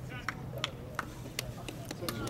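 Faint background voices of spectators in the stands, with about five sharp clicks spread across the two seconds over a steady low hum.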